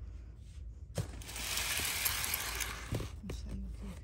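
Plastic air-pillow packing wrap rustling and crinkling as it is handled, starting about a second in and lasting about two seconds, with a knock at its start and another as it ends.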